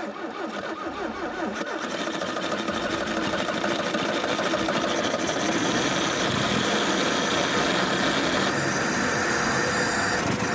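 Car engine cold-started at −30 degrees and run at high revs with no warm-up, its cold, thick oil not yet reaching the camshaft. The engine note climbs over the first few seconds, then holds steady.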